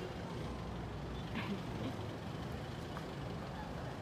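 Steady low rumble of a motor vehicle engine running nearby, with a brief higher sound about a second and a half in.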